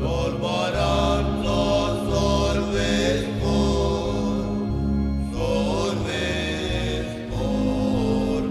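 Church hymn: singing over instrumental accompaniment, with held low bass notes that change every second or so under a bending sung melody.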